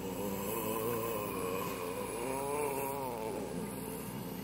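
Small dog vocalising with long, wavering moans that slowly rise and fall in pitch.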